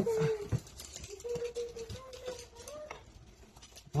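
A dog whining softly in a few long, steady, high notes.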